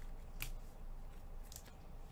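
Trading cards being handled and slid against each other: a short, sharp swish about half a second in and another quick pair of swishes near the end.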